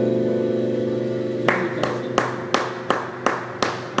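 The band's closing chord on electric guitar and keyboard ringing out and slowly fading. About a second and a half in, hands start clapping in a steady rhythm, about three claps a second.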